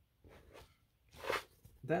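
A Fiskars plastic cutting mat sliding and scraping on the desk as it is gripped and lifted, faintly at first, then more loudly about a second and a quarter in. A short spoken word near the end.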